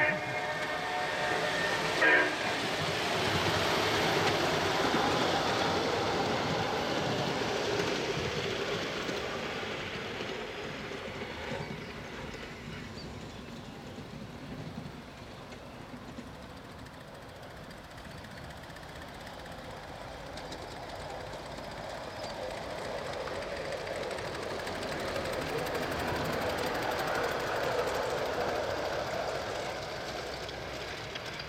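Ride-on model train: a short toot of its horn about two seconds in, then the rolling of the train on the rails fading away, and another train rolling closer near the end.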